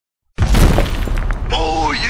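A sudden loud crash sound effect, like a wall or glass smashing, about a third of a second in. About halfway through, a single drawn-out shouted voice begins, its pitch bending.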